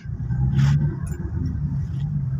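Low, steady engine and road hum heard inside the cabin of a Toyota Fortuner SUV creeping along in traffic, with a brief hiss about half a second in.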